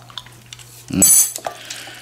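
Utensils clinking against a ceramic mug of noodles: a few small taps, then one bright, ringing clink about a second in.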